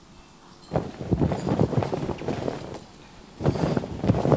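Cloth flag flapping and snapping in strong wind, a sound effect of rapid irregular flutters. It begins under a second in, drops away briefly, then starts again near the end.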